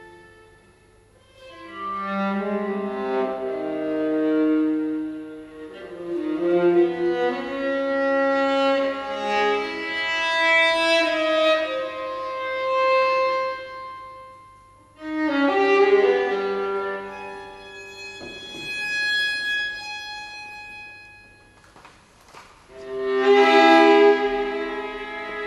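A contemporary solo viola piece played with the bow: phrases of held notes that swell and fade. The sound drops almost to nothing just after the start and again shortly before the end, with sudden loud entries after those gaps.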